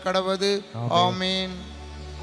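A man's voice chanting a prayer line on a nearly steady pitch, ending about half a second in. A short sung phrase that bends in pitch follows, and it gives way to a sustained instrumental chord held steadily from about a second and a half in.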